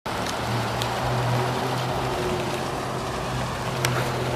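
Automatic rollover car wash running on a vehicle: a steady low hum with an even hiss of spraying water and spinning brushes, and a few faint clicks.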